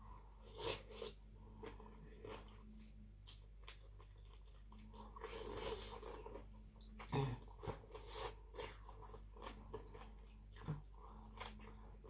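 Close-up mouth sounds of someone eating khanom jeen rice noodles with spicy papaya salad: noodles being slurped in, with chewing, crunching and many short wet clicks.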